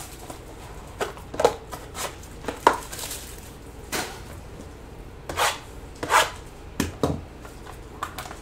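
Small cardboard trading-card boxes being handled: a scattered series of light taps and knocks, with a few brief scrapes, as boxes are slid out of a larger box and set down on a tabletop mat. Two dull thuds come a little before the end.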